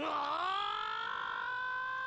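A young male anime character screaming: one long, high-pitched cry that rises sharply at the start and is then held at a steady pitch.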